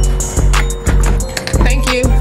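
Background music: an instrumental beat with deep bass hits about every half second, quick ticking hi-hats and held synth notes.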